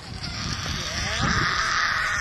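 A person's loud, raspy, drawn-out screech that grows louder over the first second and holds to the end.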